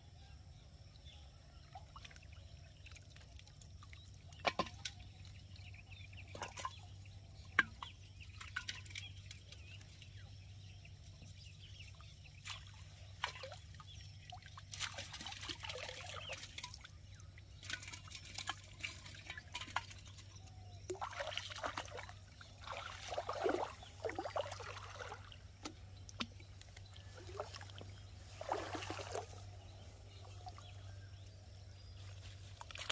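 Water splashing and streaming off a small mesh fish trap as it is lifted and shaken in shallow floodwater, with a few sharp small knocks early and a run of splashes through the second half.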